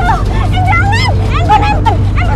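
A woman crying out in a high, strained, wavering voice, over the steady low rumble of a motorcycle engine running close by.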